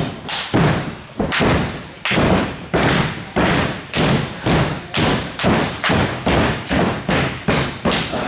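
A run of loud, evenly spaced thuds in a wrestling ring, about three a second and speeding up slightly.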